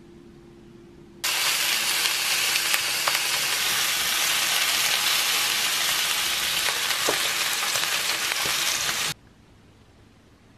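Thin beef slices wrapped around garlic chives sizzling in a hot frying pan, starting suddenly about a second in and cutting off near the end, with a few light clicks of metal tongs turning the rolls.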